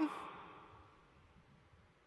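A pause in a man's speech: the end of his last word fades out in the first half second, then near silence for the rest.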